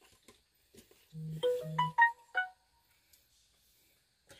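Short electronic chime like a phone notification or ringtone: two brief low buzzes, then a quick run of four or five bell-like notes that ring and fade, about a second in.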